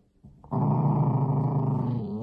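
Beagle puppy giving one long, steady growl that starts about half a second in, a possessive play growl over the owner's hat held in its mouth.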